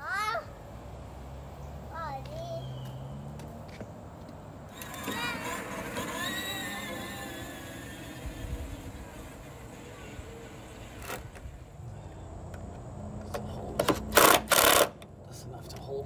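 A child's voice calling out, then two short loud bursts of a cordless drill near the end.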